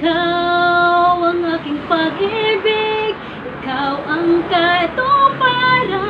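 A woman singing a ballad, holding one long note for about a second and a half at the start, then shorter phrases with a wavering pitch.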